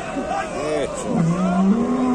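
Crowd voices overlapping, then just over a second in a bull lets out one long, low bellow that steps up slightly in pitch.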